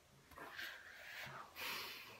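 Hairbrush bristles drawn through long hair, faintly, in two swishing strokes.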